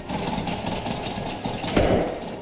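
A door rattling and shaking in its frame, a continuous irregular rattle with a louder burst near the end.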